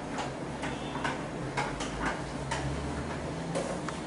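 A whiteboard being wiped with a duster: a series of short, irregular rubbing strokes, roughly two a second, over a steady low hum.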